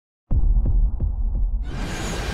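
Intro sound design opening with a deep, low throbbing pulse like a heartbeat, about three beats a second. A brighter wash of sound swells in near the end.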